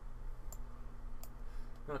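Two sharp computer mouse clicks about three-quarters of a second apart, the button pressed and released while dragging a window's resize handle, over a steady low electrical hum.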